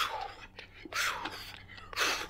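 A man breathing hard from running: forceful, breathy exhales about once a second.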